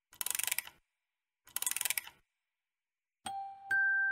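A music box being wound: three short bursts of rapid ratchet clicks, then its bell-like notes start playing near the end as the melody begins.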